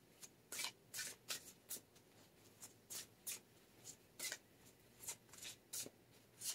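A deck of oracle cards being shuffled by hand, giving short, irregular snaps and rustles of card on card.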